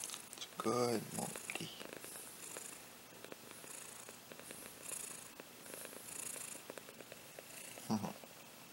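Domestic cat purring steadily while being petted.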